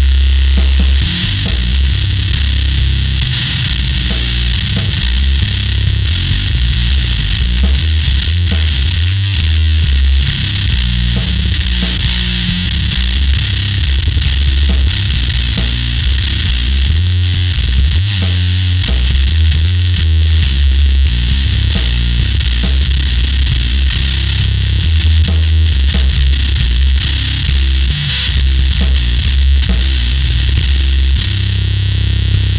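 Electric bass (Fender Precision Bass) played through a Conan Fuzz Throne fuzz pedal into a Darkglass amp: a slow, heavily fuzzed doom riff of long, held low notes with a thick layer of distortion.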